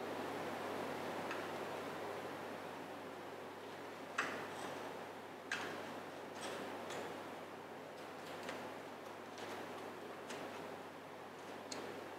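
Scattered light clicks and faint rustles of flower stems being placed and adjusted in a ceramic vase, over a steady background hiss. The sharpest clicks come about four and five and a half seconds in.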